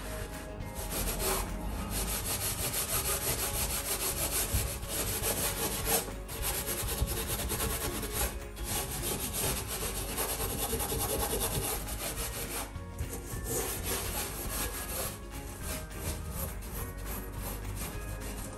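A metal scouring pad scrubbing a soapy stainless-steel gas hob and burner: continuous rubbing and scraping, broken by a few brief pauses.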